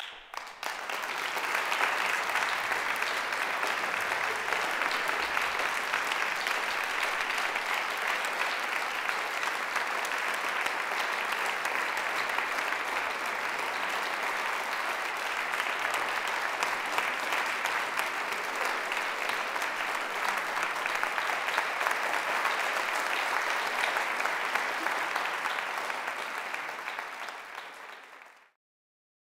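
Audience applauding: dense, steady clapping that starts abruptly, builds over the first second or two and fades out near the end.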